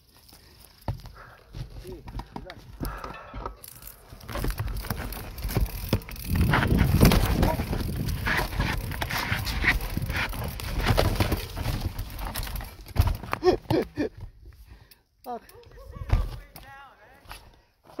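Mountain bike rolling fast down a rough dirt trail: a low rumble from the tyres with a steady clatter of knocks and rattles as the bike goes over rocks and roots. It is loudest through the middle stretch, then eases off.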